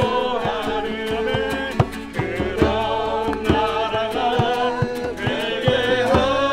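Several voices singing a worship song together, accompanied by two strummed acoustic guitars and a hand-played djembe whose strikes sound through it.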